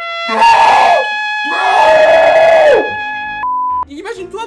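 A trumpet fanfare held on long steady notes, with a man screaming loudly over it twice; the second scream is the longer one.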